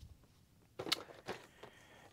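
A few soft, short knocks and taps of cardboard model-kit boxes being handled, starting about a second in.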